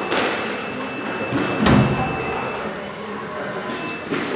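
A single heavy thud about one and a half seconds in, with a lighter knock at the start, echoing in a squash court, over a background murmur of voices.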